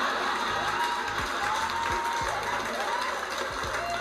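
Stand-up comedy club audience applauding and cheering, a steady spread of clapping with a few brief whoops over it.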